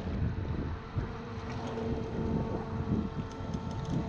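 Wind on the microphone and water against a drifting boat's hull, with a steady faint hum underneath and a few faint ticks near the end.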